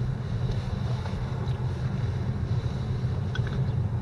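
Steady low rumble of a car driving along a street, the engine and tyre noise heard from inside the cabin.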